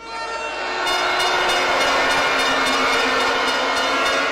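A crowd blowing many horns at once over a noisy din, swelling up during the first second and then holding loud and steady: a reaction to the name Thomas Sankara.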